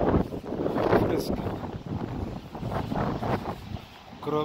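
Wind buffeting a phone's microphone, an uneven low rumble that rises and falls.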